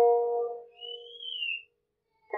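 Guzheng strings plucked just at the start, the notes ringing and fading within about half a second. Then a faint, high, whistle-like tone rises and falls for about a second before the instrument goes quiet.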